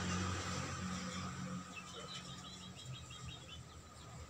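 Quiet background with a steady low hum and, a little past halfway, a quick run of about ten short high chirps from a small animal.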